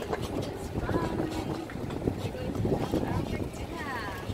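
Faint voices of people talking in the background, over a steady low rumble of outdoor noise and wind on the phone's microphone.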